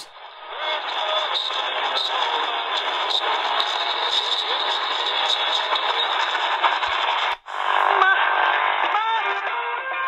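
CC Skywave portable radio's small speaker playing a distant AM station, country music on 730 kHz, thin and narrow under heavy static hiss. About seven seconds in, the sound cuts out for a moment as the radio is tuned up to 740 kHz. Another weak station then comes in with a few short gliding whistles.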